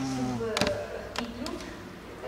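A woman's voice trailing off, then a few single sharp taps spaced about half a second apart, typical of heeled shoes stepping on a hard stone floor in a reverberant hall.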